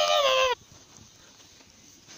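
A person's long, high-pitched scream of "Ah!", falling slightly in pitch as it cuts off about half a second in. After that there is only quiet room tone.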